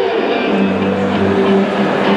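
Live blues band playing: electric guitars, bass, drums and keyboard, with a long held note from about half a second in.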